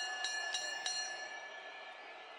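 Boxing ring bell struck rapidly, about three strikes a second, the strikes stopping about a second in and the ringing dying away after.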